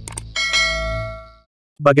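Subscribe-animation sound effect: two quick mouse clicks, then a bright bell-like ding as the notification bell is pressed, ringing and fading away over about a second.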